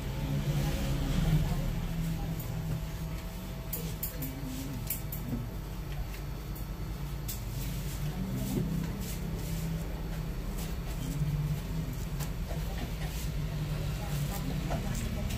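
Straight razor scraping lathered beard stubble in short, quick strokes, starting about four seconds in. Under it runs a steady rumble of street traffic and background voices.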